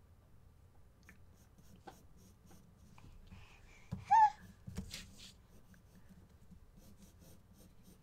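Graphite pencil sketching lightly on drawing paper, faint scratchy strokes. About four seconds in, a short, high-pitched squeal from a baby cuts in.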